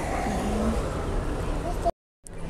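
Street ambience: a steady noise of road traffic with faint voices in it. It cuts off abruptly near the end.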